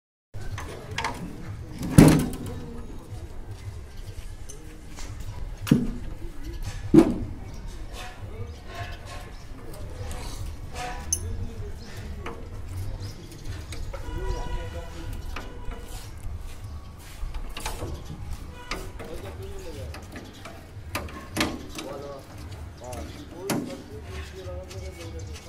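Steel formwork mould being handled and clamped on a concrete floor: a loud metal clank about two seconds in, two more near six and seven seconds, and scattered lighter knocks and clicks throughout, with faint voices in the background.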